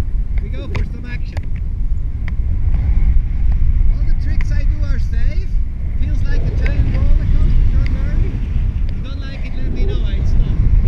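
Airflow buffeting the camera microphone in paraglider flight: a steady, heavy low rumble. Voices talk over it at times.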